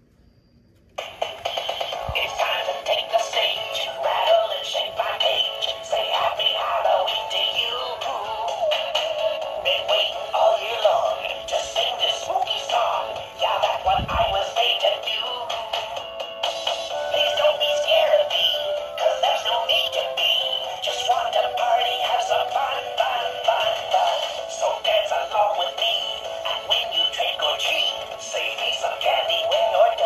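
A battery-operated animated Halloween figure, a plush pumpkin-headed skeleton, plays a song with synthetic-sounding singing through its small built-in speaker. The song starts about a second in, after a button press, and runs on with a brief break partway through.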